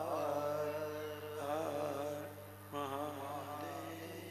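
A single voice chanting a devotional chant in long, wavering held notes, in two phrases with a short break a little before three seconds in, over a steady low electrical hum.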